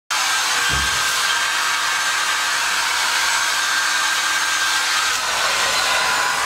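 Small handheld hair dryer running steadily: a constant rush of blown air with a faint steady whine.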